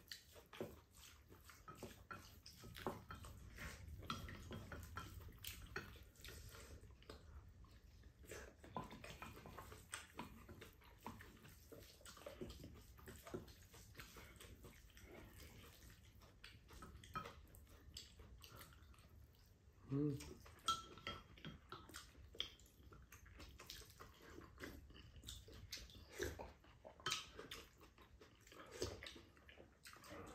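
Faint eating sounds: metal spoons and chopsticks clicking and scraping against ceramic bowls as bibimbap is mixed and scooped, with chewing and other mouth sounds.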